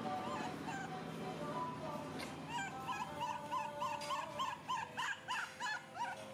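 A baby macaque squeaking in short, high rise-and-fall whimpers, a few at first and then a quick run of about three or four a second that grows louder over the last few seconds, over background music.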